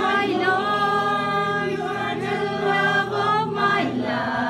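Small mixed-voice church choir singing a worship song together in long held notes, with a steady low accompaniment underneath; the voices break briefly near the end.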